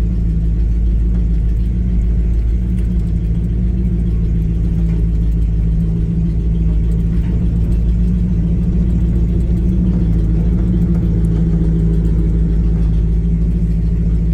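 Car engine and tyres rumbling steadily as the vehicle drives over the wooden plank deck of a covered bridge, heard from inside the cab.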